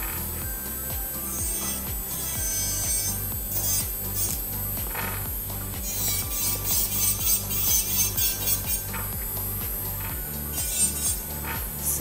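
Background music with a steady beat, under the high, wavering whine of an electric nail file's barrel bit grinding an artificial nail to shape it.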